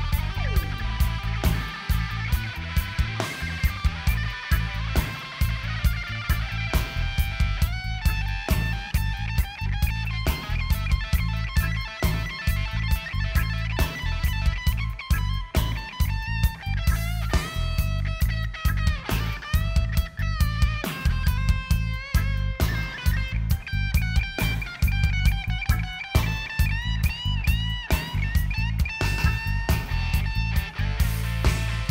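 Live reggae band with an electric guitar solo on top, played on a Les Paul–style guitar: long held notes that bend and waver with vibrato, over a steady bass and drum groove.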